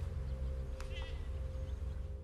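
A goat gives one short, wavering bleat about a second in, over a steady low rumble.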